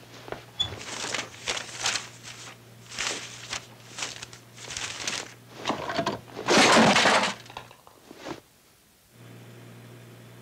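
Foley crashes and clatter of objects being knocked about and broken, coming about every half second. The loudest and longest smash comes about two-thirds of the way in, followed by near quiet.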